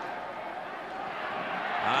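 Football stadium crowd noise in a covered dome, a steady din that grows a little louder toward the end as a running play unfolds.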